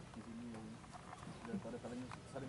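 Faint, indistinct talking of several men in a group.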